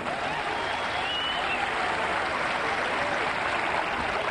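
A large audience applauding steadily, with a few faint voices in the crowd.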